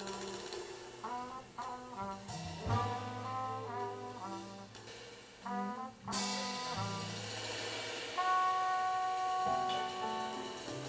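Live small-group jazz: a horn melody with bending notes over piano, double bass and drums, with a loud crash from the drums about six seconds in and a long held horn note near the end.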